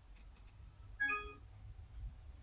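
Honor smartphone's brief charger-connected chime, a quick few-note electronic tone about a second in, signalling that the phone has started charging from the USB port.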